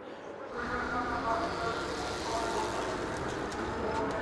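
Racing motorcycle engines running at high revs, heard as a steady buzzing drone, starting about half a second in.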